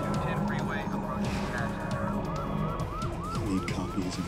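Police siren: a held wail that changes, a little over a second in, to a fast yelp of short rising chirps, about three a second, over low sustained background music.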